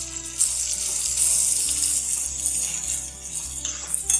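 Hot oil sizzling in a frying pan as chopped gooseberries and chilli powder are stirred in with a spoon, over steady background music.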